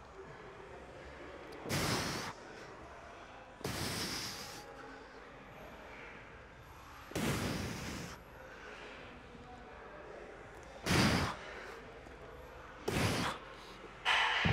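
A man breathing out hard while pressing dumbbells on a bench: five short, forceful exhalations a few seconds apart, in time with the reps.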